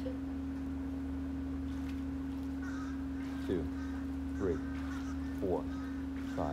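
A steady hum, and from about halfway through a bird giving short calls that fall in pitch, about one a second.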